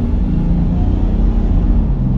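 Toyota Land Cruiser 80 Series turbo-diesel straight-six pulling steadily as the truck accelerates, heard from inside the cab.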